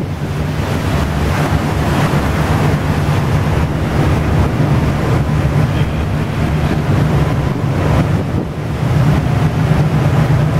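A ship's engine and propeller running with a steady low rumble under the wash of water churning in its wake through broken ice, with wind buffeting the microphone.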